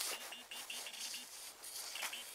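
Handheld metal-detecting pinpointer beeping as it is pushed through loose dug soil: a run of short, high, same-pitched beeps, several a second, that die away about halfway through. The beeping signals a metal target in the soil.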